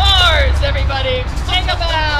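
People's voices calling and whooping with pitch that swoops down and up, several calls in two seconds, over a steady low rumble.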